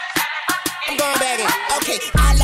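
Hip-hop track playing, with a vocal line over sharp drum hits. The low end is filtered out, so the mix sounds thin and bass-less.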